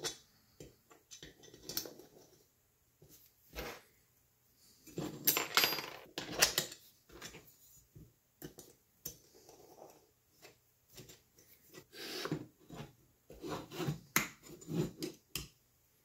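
Hand-assembly handling noise: a hex key and M5 screws being worked to fasten a plastic idler to an aluminium extrusion, with scattered metal clicks, clinks and scrapes between quiet gaps. It is busiest about five to six and a half seconds in, with more clinking about twelve seconds in and again near the end.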